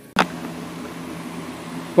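A sharp click just after the start, then a steady low machine hum with a hiss.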